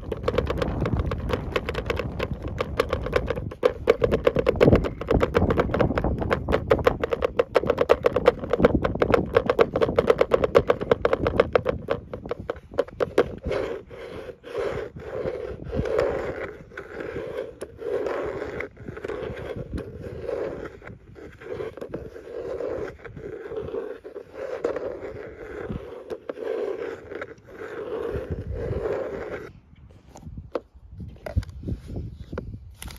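Fingernails scratching and tapping rapidly on the hard plastic lid of a tackle box. About halfway through, the strokes slow to separate scrapes about one a second.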